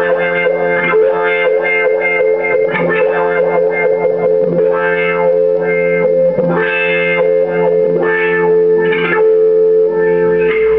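Electric guitar through a wah pedal on a clean-ish, lightly driven tone: chords are struck and left ringing while the wah sweeps the tone up and back down several times, mostly in the second half.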